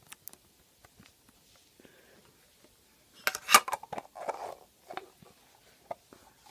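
Handling a small metal tin of thinking putty: soft clicks and taps as the putty is pressed in, then a louder cluster of metal clicks and scrapes a little past halfway as the lid is fitted onto the tin.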